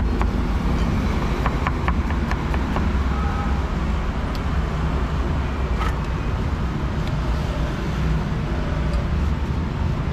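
Steady low rumble of street traffic, with a run of quick, evenly spaced knocks in the first two seconds and a few single clicks later.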